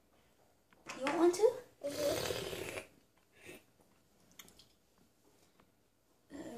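A child's wordless voice sounds about a second in, followed by a short, noisy, breathy vocal sound, then a few faint light taps.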